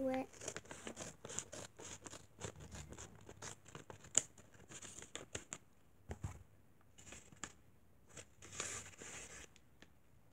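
Scissors snipping through a paper bag, a quick run of short sharp cuts for about the first five seconds, followed by a thump and soft paper rustling as the paper is handled.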